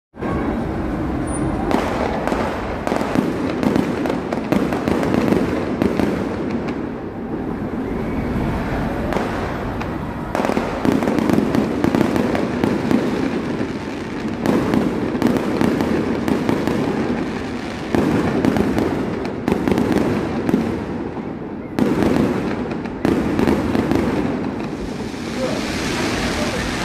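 Aerial fireworks going off without a break: a dense run of cracks and bangs, many in quick succession, over a continuous rumble of bursts.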